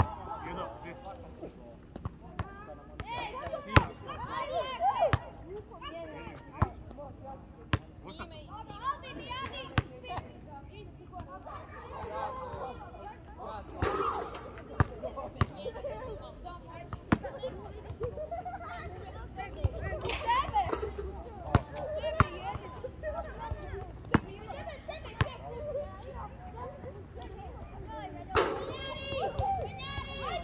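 Basketballs bouncing on an outdoor court: scattered, irregular sharp thuds every second or so, with players' voices talking in the background.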